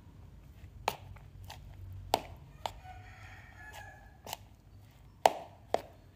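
Metal spoon clinking and knocking against the side of a bowl while stirring sticky flattened rice with mung beans and coconut: a scattered series of about seven sharp clicks, the loudest a little past five seconds.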